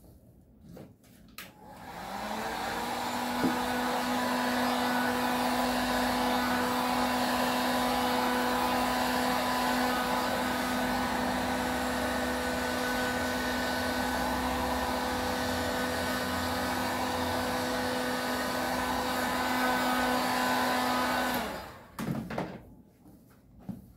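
Electric heat gun blowing hot air: a steady rush of air with a motor hum. It is switched on about two seconds in and cut off just before the end.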